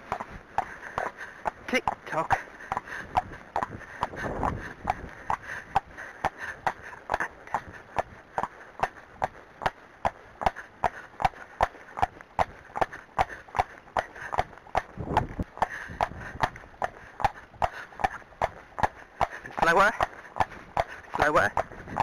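A Friesian horse's hooves trotting on a tarmac lane: a steady, even clip-clop of about three hoofbeats a second, at the slow, collected "tick-tock" trot the rider is asking for.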